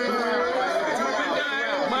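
Several men's voices talking over one another at once: overlapping crowd chatter with no single clear voice.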